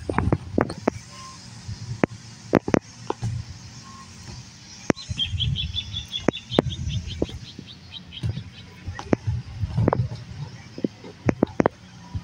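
Scattered sharp clicks and low bumps of handling noise as the camera moves close over dry grass. About five seconds in comes a small bird's rapid, high chirping trill that slows toward its end.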